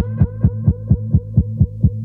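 Electronic synthesizer pulse in a beat breakdown: a short pitched note repeats about four times a second, each with a quick upward sweep, over a steady low hum, with the drums dropped out.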